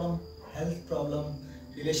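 Crickets chirping as a steady high trill behind a man's voice.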